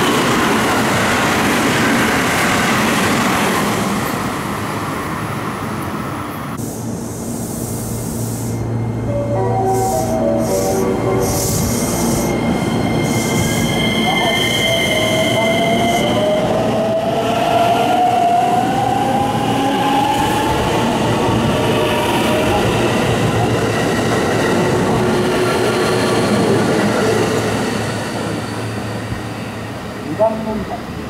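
An electric commuter train runs past with a loud rushing rumble. Then a JR West local electric multiple unit pulls away: a run of short stepped tones, then a long whine rising in pitch from its traction inverter and motors as it accelerates, fading into a steady running rumble.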